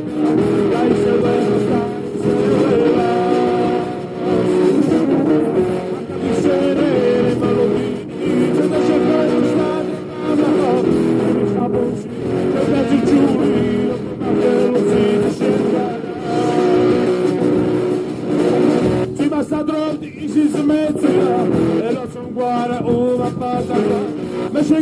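Rock band music playing: a sung melody over guitar, in phrases that swell and dip about every two seconds.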